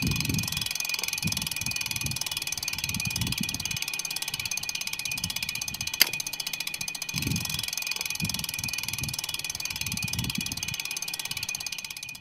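Bicycle rear-hub freewheel ticking rapidly and evenly as the bike coasts, over a low uneven rumble of wind or road. One sharp click stands out about halfway through.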